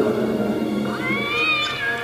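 A single drawn-out cat meow, rising and then falling in pitch, lasting a little over a second, over background music with sustained held tones.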